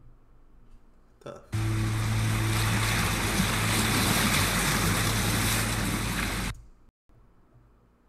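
Seaside ambience of surf and wind, with a low steady hum underneath. It starts abruptly about a second and a half in and cuts off suddenly about five seconds later.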